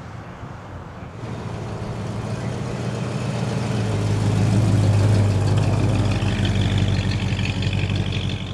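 AMC Javelin driving slowly past, its engine and exhaust a steady low rumble that grows louder as the car nears, peaks about halfway, then eases as it pulls away. A higher whine joins near the end.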